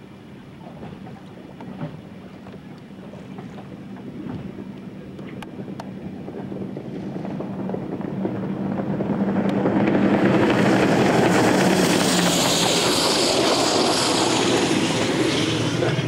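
Powerboat engine passing at speed, growing steadily louder over about ten seconds as the boat comes in. Its steady note drops to a lower pitch about twelve seconds in as it goes by, under the rushing noise of its spray and wind on the microphone.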